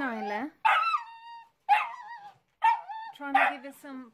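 Hungarian Vizsla puppy shut in a wire crate, giving a string of high-pitched yelping barks and whines, about one a second with short gaps between. The puppy is unhappy at being crated.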